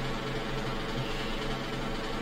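Steady low hum with faint background hiss, the recording's own background noise, with no speech.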